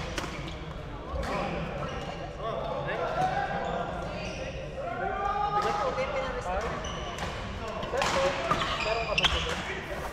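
Badminton hall sounds: sharp racket hits on shuttlecocks from the courts, with indistinct voices echoing around the large hall, loudest near the end.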